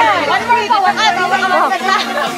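Lively chatter: several people talking over one another.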